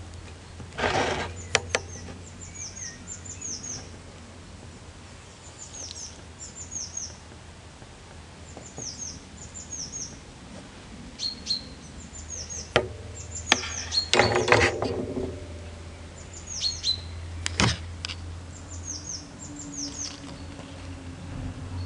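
A songbird singing repeatedly, short phrases of three or four high, falling notes every couple of seconds, over a steady low hum. A few sharp clicks and knocks cut in, loudest about a second in and again around fourteen to fifteen seconds.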